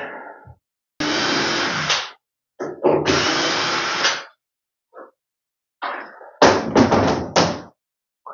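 Cordless drill-driver backing screws out of a cabinet carcass, running in two bursts of about a second each, then several shorter bursts just past six seconds in.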